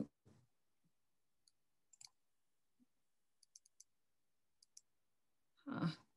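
Faint computer mouse clicks: a single click, then a quick run of four, then a pair.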